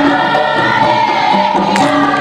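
Women's dikir barat chorus singing together in unison, with sharp percussion hits cutting through, one near the end.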